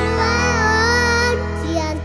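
A young boy singing a Batak-language song into a microphone over instrumental backing music, holding a long, wavering note.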